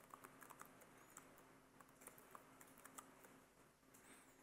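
Faint typing on a computer keyboard: a quick, irregular run of keystrokes.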